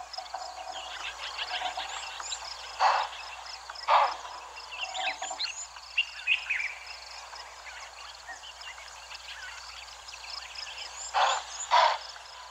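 Wild birds chirping and calling, with a fast, regular pulsing call running underneath. Four short, loud, harsh calls stand out: one about three seconds in, one about four seconds in, and two close together near the end.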